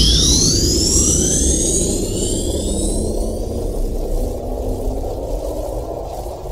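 Electronic dance music breakdown with no beat: synthesizer sweeps gliding up in pitch over a low rumbling synth bed, the sweeps thinning out after about three seconds and the whole slowly getting quieter.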